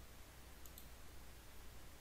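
Faint computer mouse clicks, a couple about halfway through, over a low steady hum.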